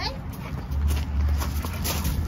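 Footsteps crunching on loose pea gravel, with a low rumble on the phone's microphone that starts about a second in.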